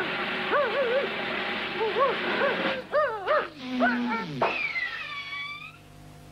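Cartoon soundtrack vocal effects: a string of short yelping cries that rise and fall in pitch, then a tone that drops steeply about four seconds in, followed by a high whistle-like note that slides slowly downward and fades out.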